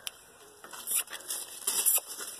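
Handling noise from a phone held close to the body: a sharp click, then scattered rustles and scrapes as hair and a sweatshirt brush the phone, louder around one second in and near the end.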